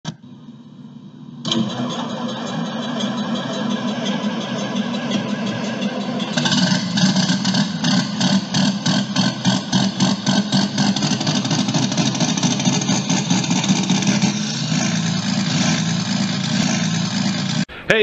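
An engine starts about a second and a half in and keeps running. From about six seconds in it settles into an even pulsing of several beats a second, then cuts off suddenly near the end.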